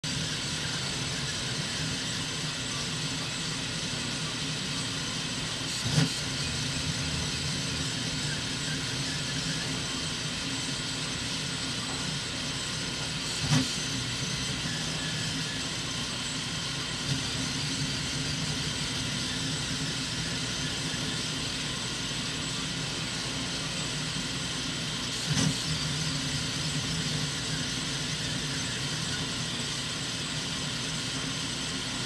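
Mini Kossel Pro delta 3D printer running a print: its stepper motors whir and shift in pitch as the print head moves, over a steady hum with thin high whines. Three short louder knocks stand out, about six, thirteen and twenty-five seconds in.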